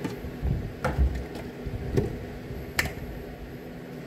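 Kitchen handling sounds as a milk carton and a plastic measuring cup are picked up and set down on the counter: a few dull low thumps in the first second, then three short sharp clicks about one, two and three seconds in.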